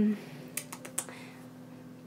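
A few faint, quick clicks about half a second to a second in, over a low steady hum.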